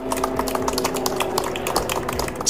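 ZeroAvia's hydrogen fuel-cell electric Piper M-class taking off, its electric motor and propeller giving a steady whine of several even tones over rapid ticking.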